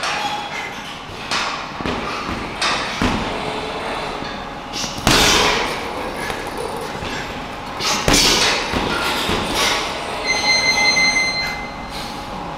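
Punches landing on a hanging heavy punching bag: irregular thuds a second or more apart, the hardest about five and eight seconds in. A brief high squeak near the end.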